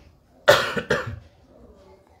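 A man coughing twice into his fist, about half a second apart, the first cough the louder.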